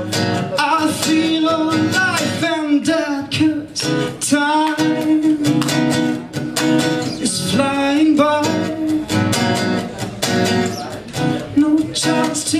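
A man singing a song while strumming chords on an acoustic guitar, with several long held notes in the vocal line.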